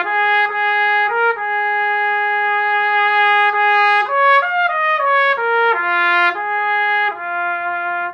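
Unaccompanied trumpet played through a Lotus 1XL mouthpiece, a cup meant for a light, dainty sound, playing a melodic phrase. There is a long held note about a second in, a quicker run of notes around the middle, and then a few held notes near the end.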